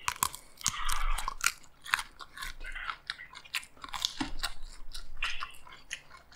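Crunching and chewing of raw cucumber and iceberg lettuce close to the microphones: an irregular run of sharp, crisp crunches.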